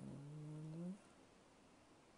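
A man's brief low hum, about a second long, its pitch rising slightly at the end.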